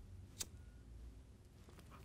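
Near silence, with one sharp click about half a second in from a handheld lighter being struck to ignite steel wool.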